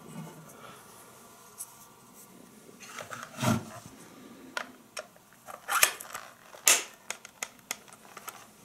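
Metal wire beaters of a vintage hand mixer being pulled out of the mixer and handled: irregular metallic clicks and rattles. The loudest come a little past the middle and again around three-quarters of the way through.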